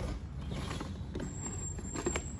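Handling noise of a hard plastic tool tote being turned by hand: a few light knocks and rubs over a low steady hum, with a thin high whine in the second half.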